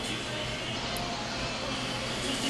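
Steady background noise with a faint low hum: room tone, with no distinct events.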